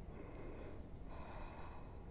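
A woman breathing softly close to the microphone, two breaths about a second apart, over a faint low rumble.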